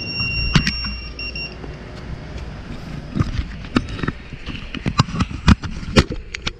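Irregular knocks, clicks and rustles from a chest-mounted action camera being jostled as the wearer walks and handles his gear, over a low wind rumble on the microphone. The sharpest knocks come about half a second in and near the end.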